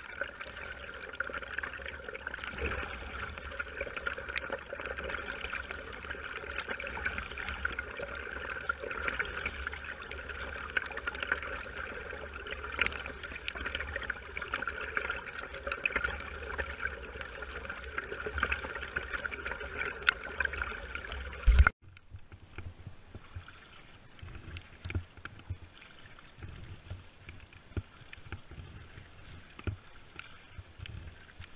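Steady rain pattering on a small boat's wet deck and the lake surface, a dense hiss of many small drop ticks. About 22 s in it drops suddenly to a quieter, sparser patter.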